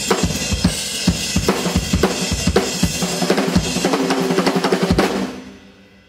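Acoustic drum kit played hard in a driving groove: bass drum, snare and cymbals in a dense run of strokes. About five seconds in the playing stops and the cymbals ring out and fade.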